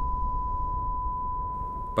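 Steady 1 kHz test tone, the reference tone that goes with SMPTE colour bars, held unchanged and cutting off just before the end. A faint low rumble slowly fades out underneath it.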